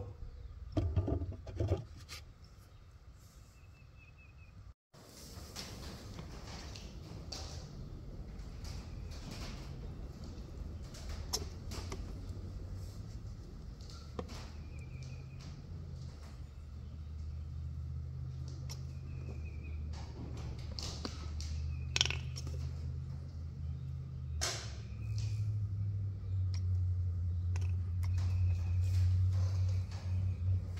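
Engine oil poured from a quart bottle into the oil-fill port of a Predator 212cc engine, over a low steady hum that grows louder near the end. A few sharp clicks and some faint bird chirps come through.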